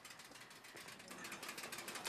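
Faint, rapid, even ticking of a bicycle's freewheel as the bike is pushed along on foot.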